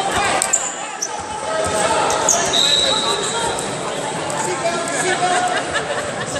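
Voices of coaches and spectators calling out in a large, echoing sports hall, with scattered thuds and a few short, high squeaks from wrestlers' shoes on the mat as they grapple.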